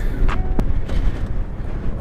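Wind rumbling on the microphone, with a short whir and a click about half a second in as the 1995 Honda Elite SR50's electric starter is pressed; the scooter's small two-stroke engine then idles too quietly to stand out from the wind.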